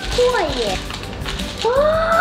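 A young girl's wordless exclamations of surprise: a falling 'ooh' about half a second in, then a rising 'ooh' near the end.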